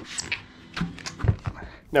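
A handful of light knocks and rubbing sounds as a mountain bike tyre is handled and its bead worked onto the rim by hand.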